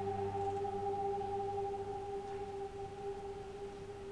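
Cello holding one long bowed note that slowly fades away, with a lower note dying out beneath it about a second and a half in.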